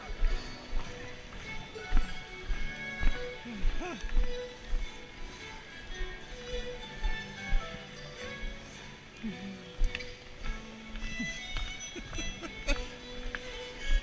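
Live band playing contra dance music with a steady beat, with dancers' voices mixed in.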